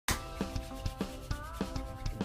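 Hands rubbed briskly together, palm on palm, in repeated short strokes, over quiet background music with sustained tones.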